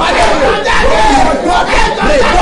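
Loud, fervent shouted prayer, with several voices overlapping without a break.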